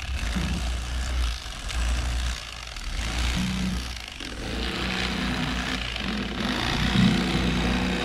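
Electric fillet knife running, its twin serrated blades sawing through a bream. The motor's hum shifts in pitch partway through as the cut loads it.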